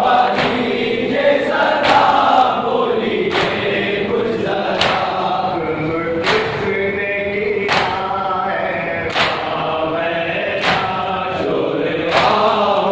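Men's voices chanting a noha (Shia lament) together, with a sharp unison strike about every one and a half seconds in time with it: chest-beating matam.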